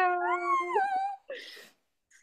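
Excited, wordless held "ooh" from a woman's voice, a second voice joining and sliding up in pitch over it, lasting about a second and a half. A brief breathy hiss follows.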